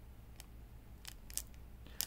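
A few faint, short crinkles and ticks from a clear plastic sleeve around a warranty card as it is handled, over a low steady room hum.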